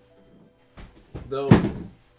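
A long cardboard shipping box being put down: a soft knock, then a loud, sharp thump about one and a half seconds in.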